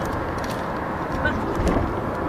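Steady low rumble of car road and engine noise heard from inside the cabin, with a few faint clicks and rustles of the camera rubbing against clothing.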